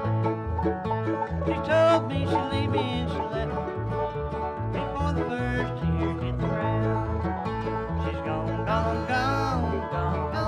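Bluegrass band playing an instrumental break on banjo, mandolin, acoustic guitar and upright bass. The bass keeps a steady beat of about two notes a second under the picked lead lines.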